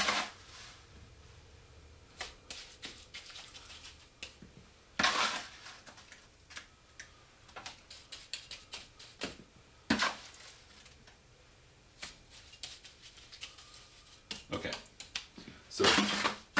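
Steel trowel scraping wet mortar out of a mold and into a plastic bucket: a run of short scrapes and clicks, with louder scrapes about five and ten seconds in.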